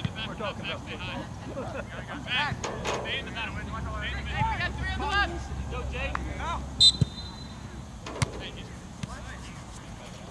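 Distant shouts and calls of soccer players on the field. About seven seconds in a short, high referee's whistle blast sounds, with a couple of sharp ball-kick knocks just after.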